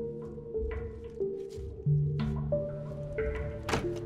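Suspenseful film score: a low held bass note and sustained higher tones over a steady beat of sharp percussive hits, with a heavier thunk near the end.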